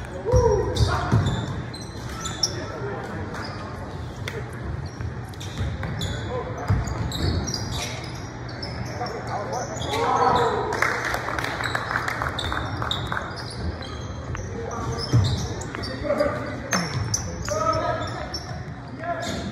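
Sound of a basketball game in a gym: the ball bouncing on the hardwood court, with sneakers squeaking and players and spectators shouting. The shouting is loudest about ten seconds in and again near the end.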